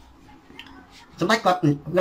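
A brief pause holding a faint clink, then a man's voice resumes speaking Khmer.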